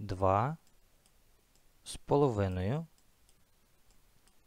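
A man's voice speaking two slow, drawn-out words, with one sharp click just before the second word.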